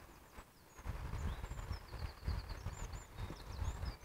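Faint birdsong: scattered short high chirps and a quick run of repeated notes around the middle, over a low, uneven rumble.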